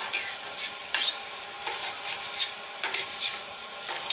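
Spaghetti sizzling as it is stir-fried in a stainless steel skillet, stirred and tossed with a metal utensil that clicks against the pan several times.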